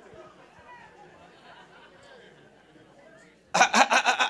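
Faint murmur of voices from the church hall, then a man's amplified voice through the microphone starts suddenly near the end.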